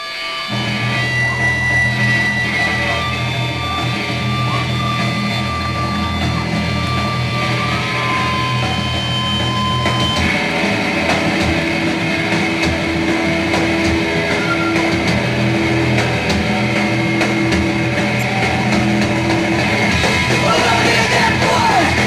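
A punk rock band playing live: distorted electric guitar chords are held, with sustained feedback tones ringing over them. The sound fills out about ten seconds in, and a voice starts yelling or singing near the end.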